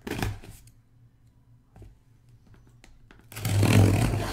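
Cardboard box being handled on a mat: a short rustle at the start, a few faint taps, then a louder scraping rustle of cardboard near the end.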